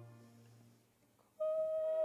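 Operatic aria with chamber orchestra accompaniment. A held note with vibrato fades away into a brief near-silent pause. About one and a half seconds in, a new high note enters and is held, its vibrato starting near the end.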